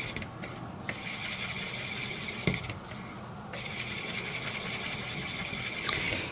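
A wooden stick stirring and scraping acrylic paint around a plastic plate, a steady rubbing that pauses twice, with one light tap midway.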